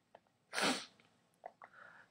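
One short, breathy burst from a person, a sniff or sharp breath of air, about half a second in, followed by a few faint mouth clicks.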